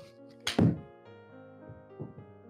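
A golf iron striking the ball off a hitting mat on a soft, easy full swing: one sharp crack, with a second knock right behind it, about half a second in. Background music with sustained keyboard notes plays underneath.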